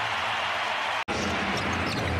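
Basketball arena game sound: steady crowd noise with a basketball being dribbled on the hardwood court. The sound cuts out for an instant about a second in.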